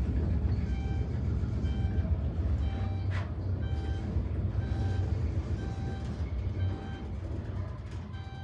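Gearless traction high-rise elevator car, rated 800 feet per minute, riding up at speed: a steady low rumble in the cab, with a short electronic beep about once a second as floors go by and a single sharp click about three seconds in. The rumble eases near the end as the car slows on its approach to the upper floors.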